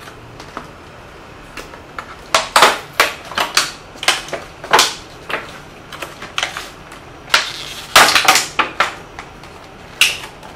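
A tabletop tripod's plastic packaging being opened and handled: irregular crackles and clicks, starting about two seconds in and loudest near the end.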